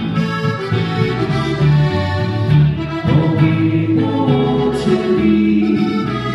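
Slovenian folk ensemble playing live, with a button accordion carrying the tune over guitar and double bass.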